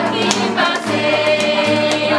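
A group of children and adults singing a song together, clapping their hands in time about twice a second.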